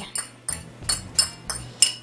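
A metal spoon tapping against a dish, sharp clinks about three a second, knocking chopped onion off into a mixing bowl.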